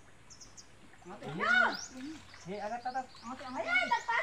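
A person's voice calling out: one long call that rises and then falls in pitch, starting about a second in. It is followed by more shouted, wordless calling.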